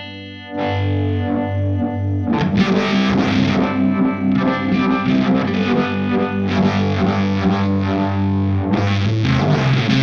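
Electric guitar played through a Uni-Vibe-style vibe pedal with some distortion. A chord rings about half a second in, then busier strummed chords and riffs follow from about two seconds in.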